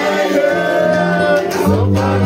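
Live gospel worship singing: men singing into microphones, with other voices joining, holding long notes over steady low instrumental notes.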